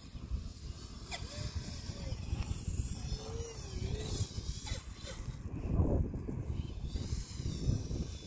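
Wind gusting on the microphone, a low uneven rumble that swells about six seconds in, over the faint drone of a small radio-controlled plane's motor and propeller flying overhead.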